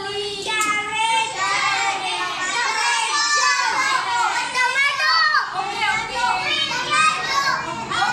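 A room full of young children's voices, many talking and calling out at once in a steady, high-pitched din.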